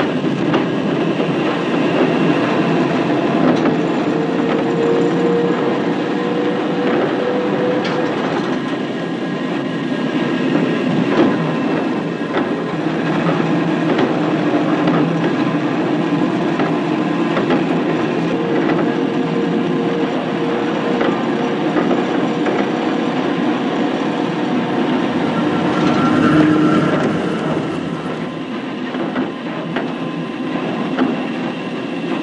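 Steel wheels of a tram running along rails: a steady rumble with frequent clicks over the rail joints. A long whining tone comes in a few seconds in and again past the middle.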